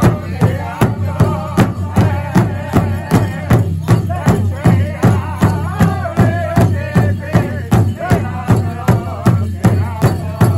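Powwow drum group striking a large shared drum in a steady, even beat, about three strokes a second, while the singers chant together over it.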